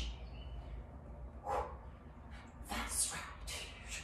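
A woman's short, sharp exhales while lifting a weighted bar, several breaths coming in quick succession.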